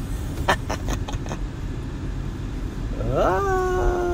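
Low steady rumble of a moving car heard from inside the cabin, with a few sharp clicks in the first second and a half. From about three seconds in, a young child's long drawn-out vocal sound rises in pitch and then holds.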